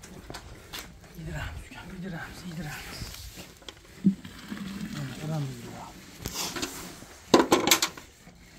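Faint voices talking in the background, with a short, loud, rushing noise about seven seconds in.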